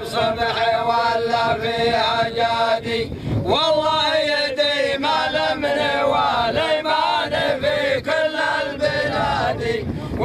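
Male voices chanting lines of Arabic poetry in long, drawn-out held notes, with a new phrase starting on a rising pitch about three seconds in.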